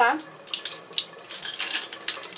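Makeup brushes clicking and clattering against one another and the sink rim as they are handled and set down, a few sharp knocks over the hiss of a running tap.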